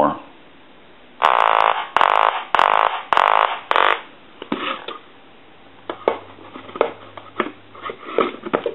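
Duck telephone's electronic quacker ringer sounding a quick run of four or five loud quacks from about a second in, on a ring test with the quacker repaired and working. Scattered clicks of the phone being handled follow near the end.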